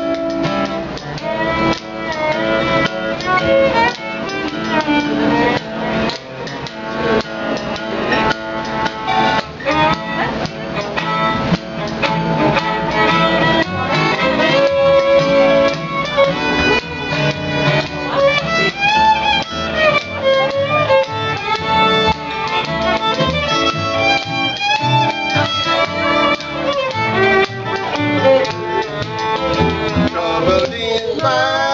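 Bluegrass band playing an instrumental passage: a fiddle carries a sliding melody over a strummed acoustic guitar and a steady bass line.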